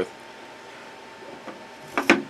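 Quiet handling of router bits against a plastic-topped wooden bit tray: a faint rubbing, then a light tap near the end as a bit is set into its hole. A faint steady hum lies underneath.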